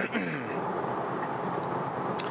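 Steady tyre and road noise heard inside the cabin of an electric Tesla at highway speed.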